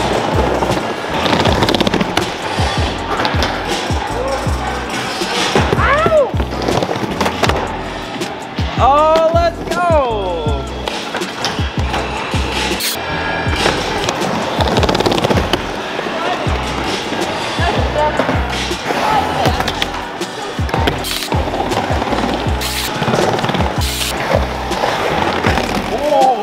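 Skateboard wheels rolling and carving on a wooden skatepark bowl, with music playing over it.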